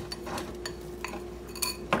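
A metal fork clinking and scraping a few times against a ceramic bowl as a sticky cereal-and-marshmallow mixture is pressed down, over a faint steady hum.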